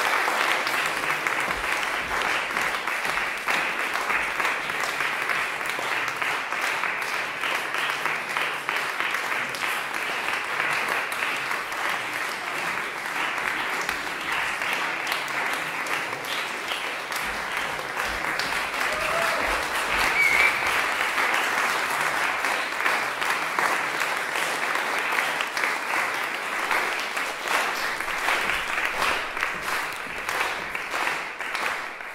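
Audience applause: steady, continuous clapping from a concert audience that keeps up without a break as the performers take their bows.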